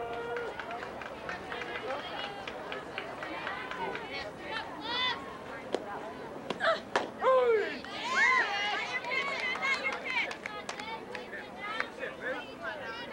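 Background voices of several people calling and chattering, none of it clear speech, with a few sharp knocks about six to seven seconds in.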